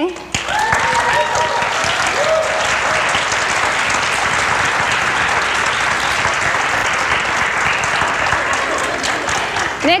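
An audience applauding steadily, with a couple of voices calling out over the clapping in the first few seconds.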